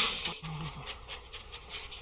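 An animal breathing in quick panting snuffles. A loud hiss fades in the first half second, then short breaths follow about four a second.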